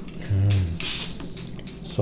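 A can of mango-flavoured Pepsi cracked open: a short, sharp hiss of escaping gas just under a second in. A brief hummed 'mm' comes just before it.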